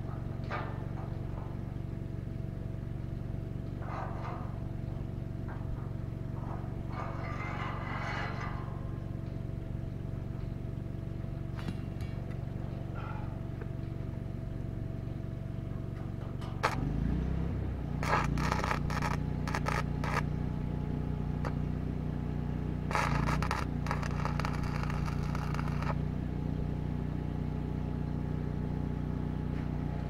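Stick-welding arc crackling on steel pipe: a short burst about seven seconds in, then on and off from about eighteen to twenty-six seconds. Under it runs the steady hum of an engine, which picks up speed just before the longer bursts.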